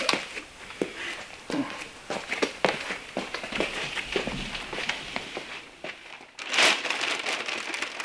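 Handling noise as a car bonnet is carried and set down on a paint stand: scattered light knocks and a rustling, crinkling covering, with one louder crinkling rustle about six and a half seconds in.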